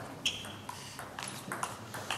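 Table tennis rally: the ball clicks sharply off the rackets and the table about every half second, five hits in quick succession.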